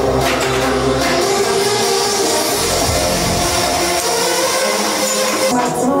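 Loud music playing steadily, with held notes and a dense even texture throughout.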